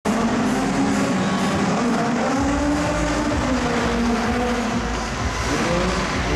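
Engines of 2000 cc class race cars running on an indoor track, revving up and down so the pitch keeps rising and falling.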